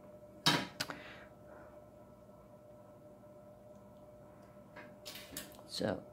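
Two short knocks about half a second in, then quiet room tone with a faint steady hum, then a run of light clicks and clatter near the end as the wood-burning pen is picked up and handled.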